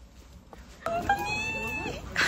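A high-pitched, drawn-out whining voice, about a second long, starting just before the middle, after a quiet first half.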